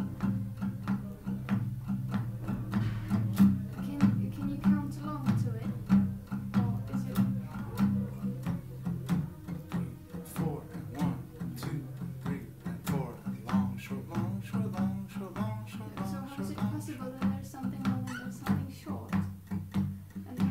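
Acoustic guitar in an alternate tuning strummed in a shuffle rhythm, long and short strokes alternating over sustained low strings.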